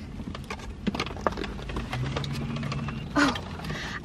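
A cardboard fast-food box being opened and the paper wrapper inside handled: scattered light crackles and taps.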